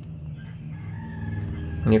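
One long, drawn-out animal call, like a bird's, heard faintly in the background over a steady low hum.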